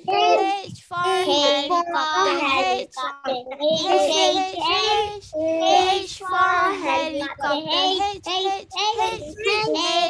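A young child singing over a video call, one voice holding sustained, wavering notes with short breaks for breath.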